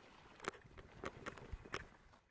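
Faint sounds of a kayak being paddled on calm water: a few soft, irregular clicks and drips from the paddle.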